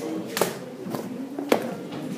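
Two sharp knocks about a second apart, from hard objects being handled and set down on a lecture bench.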